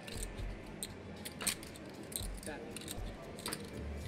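Poker chips clicking together a handful of times as a bet is counted out from a stack and pushed in; scattered, faint clicks.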